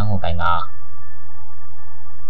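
A steady low drone with faint high held tones, a sound bed under a spoken story; a voice stops just under a second in and the drone carries on alone.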